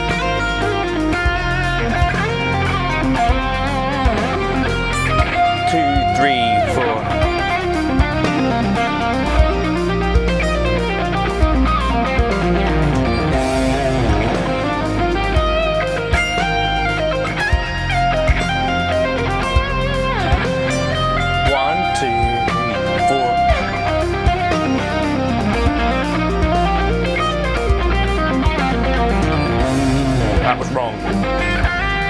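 Electric guitar playing a fast legato lead line, with bends and vibrato, over a backing track with sustained bass notes and a steady beat.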